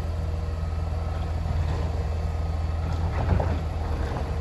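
Mack LEU garbage truck's engine running steadily while the Labrie Automizer's automated arm lifts and tips a wheeled cart into the hopper, with a knock a little over three seconds in.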